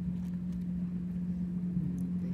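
A steady low hum of a running engine, one unchanging pitch with a low rumble beneath it.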